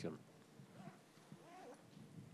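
Near silence: room tone, with the last of a spoken word at the very start and a faint, distant voice murmuring briefly about a second in.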